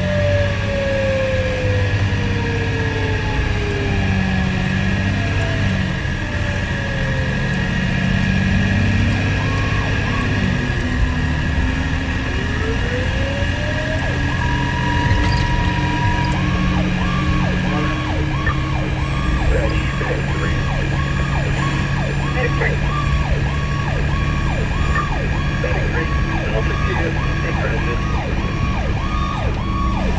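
A 1970s-era GE Powercall electronic siren on a fire engine, heard from inside the cab over the truck's engine drone. Its pitch falls slowly through the first several seconds, then sweeps up to a held tone around the middle. For the second half it is switched to a fast, steadily repeating yelp.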